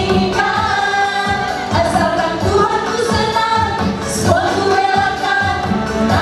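A women's vocal group singing together into microphones over accompaniment with a steady beat.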